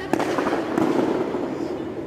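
A wooden staff smacks down hard on a foam competition mat with a sharp crack just after the start, then scrapes and rustles across it for about a second as it is swept along the floor.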